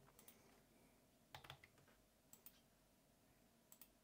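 Near silence with a handful of faint, scattered clicks from someone working a computer's mouse and keyboard.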